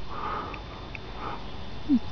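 A man's breath between phrases, a soft sniff or inhale through the nose, with a brief voiced sound just before the end.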